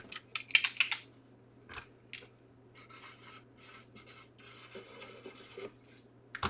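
Cardboard box being handled and slid across a table: a few short scrapes in the first two seconds, then quieter scratching and rubbing.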